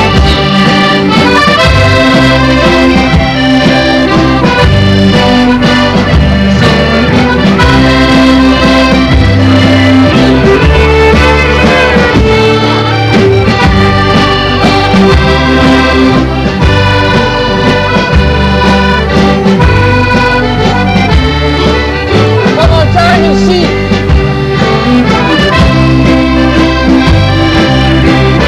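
Accordion leading a live band, with a drum kit keeping a steady beat, playing a traditional dance tune loud and without pause.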